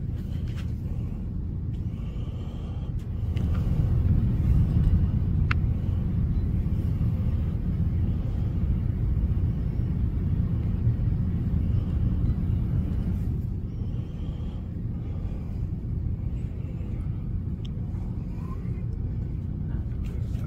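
A steady low rumble with no words, swelling louder for several seconds in the middle before easing back.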